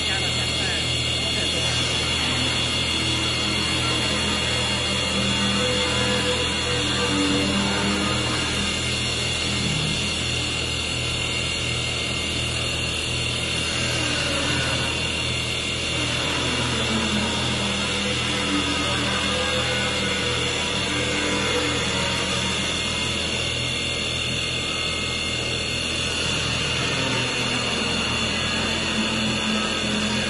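STYLECNC STL1516-2 double-axis CNC wood lathe running, its two spindles turning wooden baseball-bat blanks while the carving tools cut. It gives a steady machine hum with a constant high whine.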